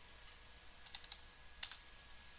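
Faint computer keyboard typing: a quick run of about four keystrokes around a second in, then a single louder key press.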